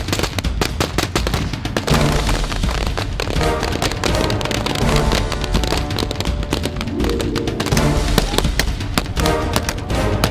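Background music with a bass beat, overlaid by dense, rapid gunfire from several rifles, with sharp cracks packed closely throughout.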